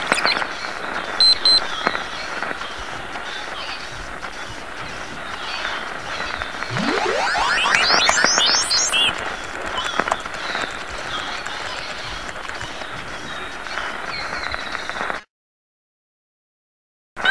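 Harsh, noise-heavy distorted electronic sound, dense and hissing throughout. About seven seconds in, a steep rising sweep climbs from a low pitch to a very high one over roughly two seconds. The sound cuts off abruptly to dead silence about a second before the end.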